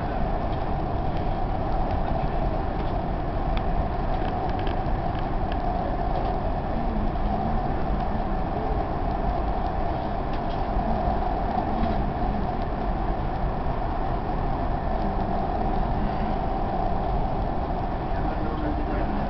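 Dubai Metro train running at speed, heard from inside the carriage: a steady rumble with a constant mid-pitched hum over it and a few faint clicks.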